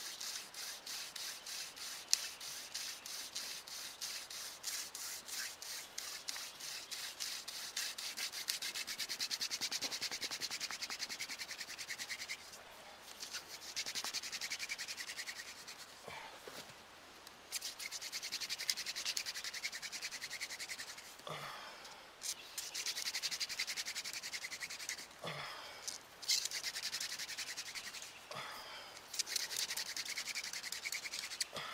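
Hand drill friction fire: a wooden spindle spun back and forth between the palms, its tip grinding into a wooden fireboard with a fast, steady rasping rub. The rub is broken by a few short pauses. The spindle is heating the board and grinding out wood dust toward an ember.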